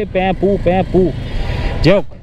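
A man speaking in Bengali over the steady noise of city traffic, with engines running around him; his voice pauses for about a second midway and resumes near the end.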